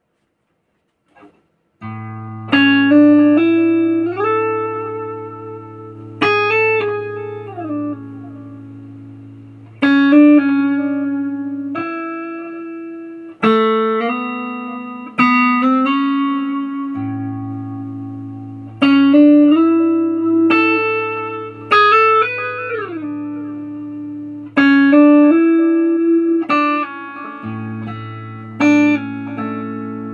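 Clean electric guitar from a Telecaster-style guitar fitted with Nuclon magnetic pickups: struck chords and short melodic phrases, each left to ring out with long sustain, with a few slides between notes, over a steady low held note. The playing starts about two seconds in.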